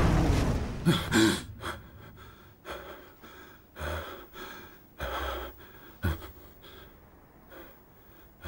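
A man gasping and breathing heavily on waking from a nightmare, in ragged breaths a second or so apart. A loud din fades out in the first second.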